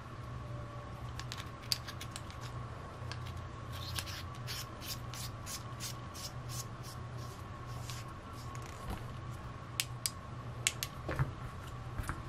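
Small aluminum penlight being screwed back together after reloading its AAA battery: a run of short scratchy ticks, about two a second, as the threads turn, then a few sharper clicks near the end, over a steady low hum.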